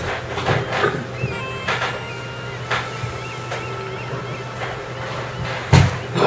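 Steady low room hum with scattered soft knocks and clicks, a louder knock near the end, and faint high chirping whistles in the middle.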